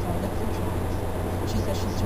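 Steady low road and engine rumble inside a moving car's cabin, with faint talk from the car radio underneath.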